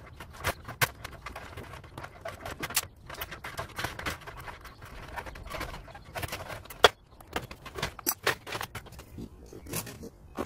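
Irregular metallic clicks, taps and scrapes of sheet-metal oven parts and a heating element being handled as an electric oven is taken apart, with one sharp knock about seven seconds in.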